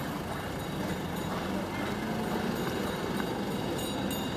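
City street traffic: pickup trucks driving past close by, a steady mix of engine and tyre noise.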